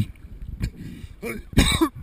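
A man coughing hard, once, about a second and a half in, bringing up lake water he swallowed.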